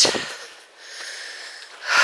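A woman breathing as she climbs a steep woodland path: faint breath sounds, then a sharp, audible intake of breath near the end.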